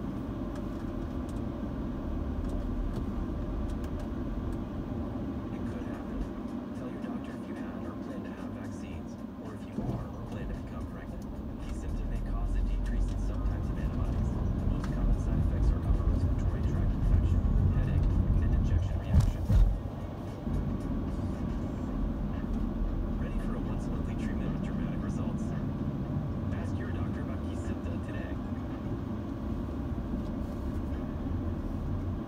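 Inside a moving car's cabin: the car radio plays voice and music over engine and road rumble. The rumble grows louder from about twelve to twenty seconds in, with two short thumps near the twenty-second mark.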